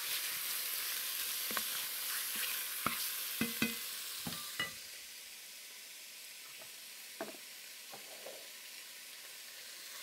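Chunks of pork sizzling in hot oil in an enameled Dutch oven while being tossed with a wooden spoon, with scattered knocks of the spoon against the pot. About halfway through, the stirring stops and the sizzle drops to a quieter steady hiss with an occasional pop.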